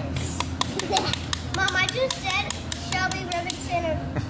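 A quick, irregular run of sharp clicks or claps, a dozen or more, over background voices.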